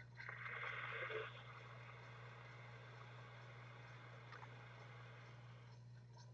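Soft airy hiss of a vaper drawing through a rebuildable dripping tank atomizer (Big Dripper RDTA) as the coil fires, lasting about a second near the start, then near-quiet with a steady low hum.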